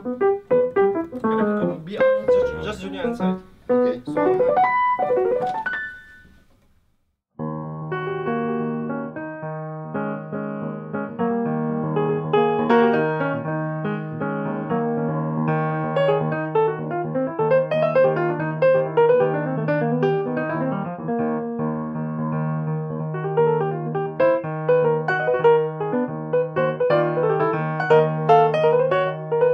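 Solo jazz piano on a grand piano. A quick, busy run of notes fades away about six seconds in. After about a second of silence, playing starts again with a held low bass note under chords and a running melody.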